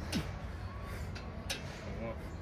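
A man's short, falling effort grunt just after the start as he pulls up on a pull-up bar, and a brief sharp sound about one and a half seconds in, over a steady low rumble.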